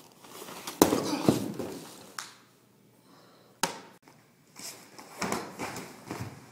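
A body thrown at full speed and landing hard on a foam gym mat: a sharp thud about a second in and a second thud half a second later. Then a sudden knock and rough scuffling on the mat as the thrown man is taken into an armbar.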